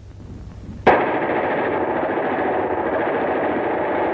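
Sustained machine-gun fire from an old newsreel soundtrack, dull and narrow in tone. It starts abruptly about a second in, after a faint hum, and keeps up as a rapid, even stream of shots until it cuts off at the end.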